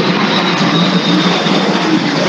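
A loud, steady rushing noise with a low hum beneath it, unchanging throughout.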